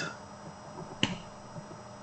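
A single short, sharp click about halfway through, over quiet room tone.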